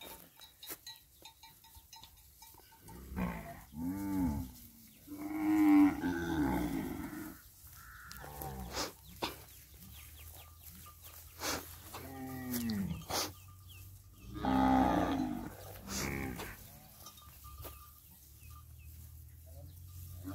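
A herd of zebu-type cattle, cows and calves, mooing: several separate calls of differing pitch, some deep and some higher, scattered through the few seconds with quiet gaps between.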